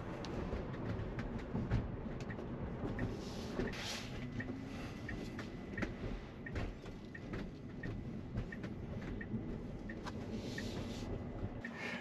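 Steady road and tyre noise inside the cabin of a moving Tesla Model Y, an electric car with no engine sound, with a few faint clicks and a light regular tick about every two-thirds of a second.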